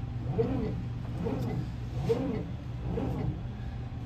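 Bizerba GSP HD automatic slicer running in automatic mode: a steady motor hum with a rising-and-falling drive sound that repeats a little faster than once a second as the carriage strokes back and forth.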